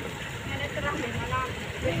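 Faint voices talking over a steady low rumble.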